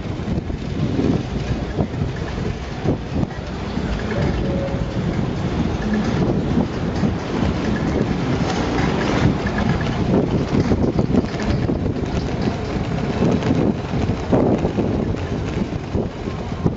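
Wind rushing over the microphone of a camera riding on a moving bicycle, a steady low rushing noise mixed with the rolling of the bike.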